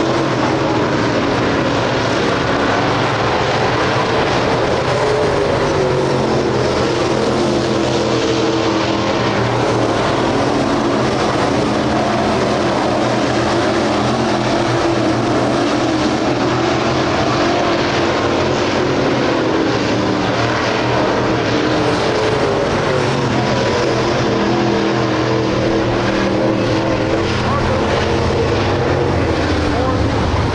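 Dirt late model race cars' 602 crate small-block V8 engines running at speed around the track. Their pitch rises and falls as the cars lift and accelerate through the turns.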